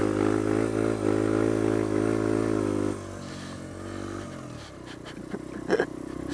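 A Sinnis Apache 125 supermoto's single-cylinder engine, fitted with a D.E.P. exhaust, running at steady throttle, then dropping off sharply about three seconds in as the throttle closes and easing lower after that. A few short knocks come near the end.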